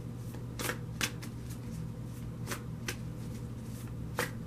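A deck of tarot cards being shuffled by hand, the cards slipping and slapping against each other in irregular short strokes. A steady low hum runs underneath.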